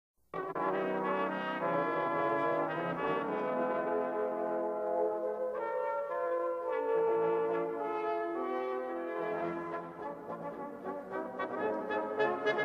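A brass ensemble playing slow, sustained chords that change every few seconds, with quicker notes coming in near the end. The recording comes from an old cassette tape.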